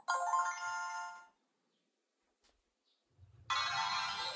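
A talking plush toy's built-in speaker plays a steady electronic chime for about a second, then goes silent. Near the end, after a soft low rumble, it starts a bright electronic jingle with sweeping tones, like a transformation sparkle effect.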